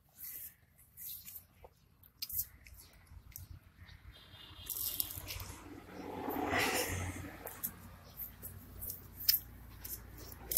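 A toddler biting and chewing a sour green belimbing besi fruit: small crunching and wet clicking sounds, with a louder, longer stretch of noise around the middle as the sourness hits.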